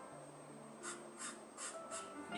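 Pastel pencil scratching across textured paper in three short strokes in the second half, over faint background music.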